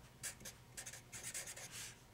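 Felt-tip marker writing a word on paper: a quick run of short strokes of the tip across the sheet, several a second.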